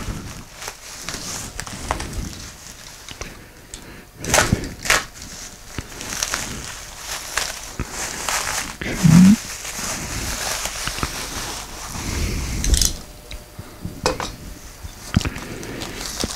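Plastic packaging wrap crinkling and rustling as it is pulled off by hand, with several sharp knocks and clicks. A short voiced 'mm' about nine seconds in.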